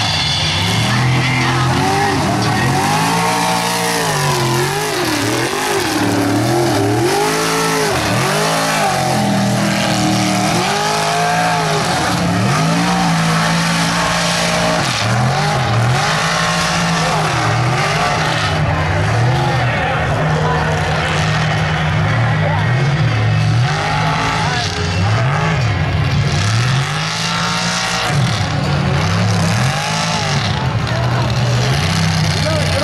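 Mega truck engines revving hard again and again, the pitch swinging up and down with each stab of the throttle.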